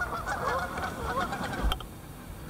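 A flock of geese honking, several birds calling over one another, stopping with a click near the end.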